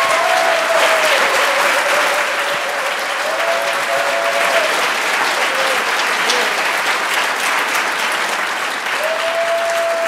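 Audience applauding steadily in an auditorium for the whole stretch. A thin held tone sounds over the clapping for the first few seconds and again near the end.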